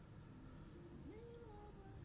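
Near silence: room tone, with a few faint, thin pitched sounds that rise and fall about a second in.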